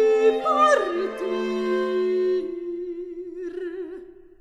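Baroque chamber music from a small period ensemble. Held notes, some with vibrato, settle into a closing chord that fades away near the end.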